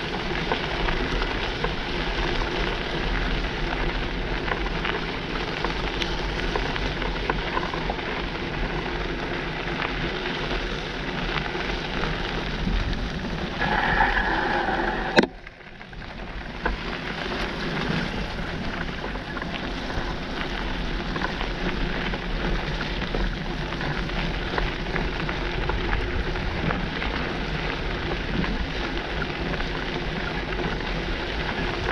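Mountain bike rolling fast over wet gravel: a steady rush of tyre noise and wind on the camera mic. About 14 s in, a short squeal from the worn-out brakes ends in a sharp click, and the rush dips briefly as the bike slows.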